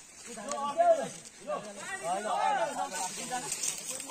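Men's voices calling out and talking at some distance, over a faint steady high hiss.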